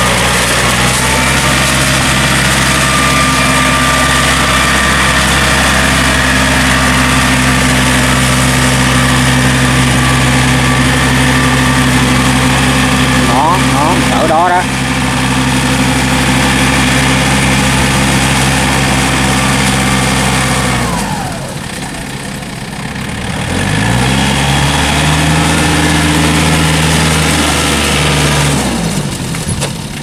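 Yanmar tractor's diesel engine working steadily under load as its steel cage wheels churn through deep paddy mud. The revs drop about two-thirds of the way in, climb again a few seconds later, then drop once more near the end.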